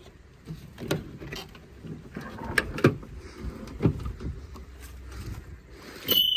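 Rear liftgate of a Chevrolet SUV being unlatched and swung open by hand: a string of separate clicks and knocks, the sharpest about three seconds in.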